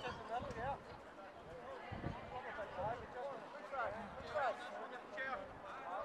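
Distant shouts and calls of footballers across the pitch, several voices overlapping, with a few low thumps.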